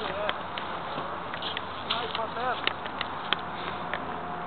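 Indistinct voices calling at a distance over a steady outdoor background hiss, with a few short pitched calls and some light clicks.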